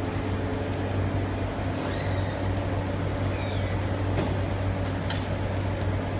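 Steady low mechanical hum of a kitchen fan, with a few faint clicks over it.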